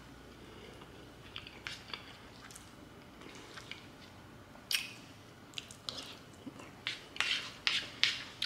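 Quiet chewing of a mouthful of rice dish, with sparse small clicks and scrapes of a plastic spoon against the plate; the sharpest click comes about halfway through and a quick run of them near the end.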